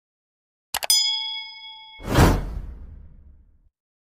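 Subscribe-button animation sound effects: a quick cluster of mouse clicks under a second in, a bell ding that rings on for about a second, then a whoosh that swells and fades away.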